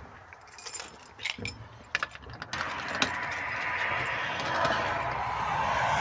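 Sharp metal clicks and rattles as a sliding glass door's latch and handle are worked open. About two and a half seconds in, a steady rushing noise starts and grows louder.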